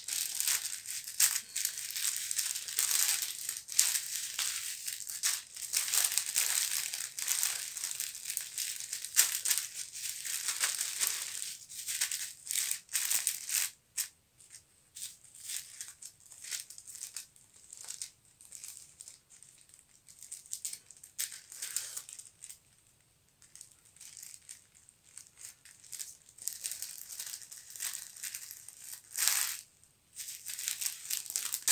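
Clear plastic bag and bubble wrap crinkling and rustling as they are handled: dense crackling for roughly the first half, sparse soft crinkles in the middle, then more crinkling near the end.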